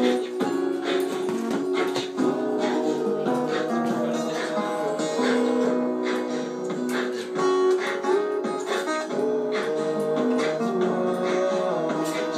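Guitar music played back from a loop station through a small amplifier: repeating plucked and strummed guitar notes layered with light percussive clicks, at a steady level.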